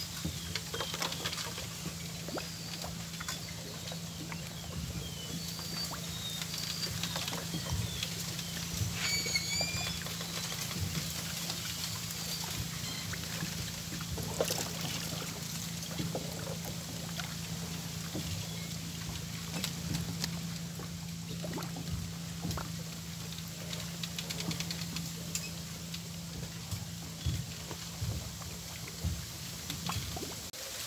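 Water lapping and trickling among floating water hyacinth, with scattered small clicks and a steady low hum underneath. Small birds chirp high and briefly during the first ten seconds or so.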